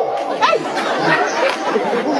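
Several voices talking over one another: crowd chatter.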